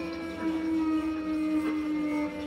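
Contemporary chamber-ensemble music for winds, brass, strings, percussion and keyboard: a loud sustained tone in the lower middle register, sinking slightly in pitch, held under quieter sustained higher tones with a few soft attacks.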